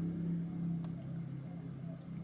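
Steady low hum of a running car, heard from inside its cabin, with one faint click about a second in.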